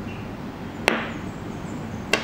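A single sharp click with a short ringing tail about a second in: a small worked stone knocking against a hard tabletop or against another stone as it is set down.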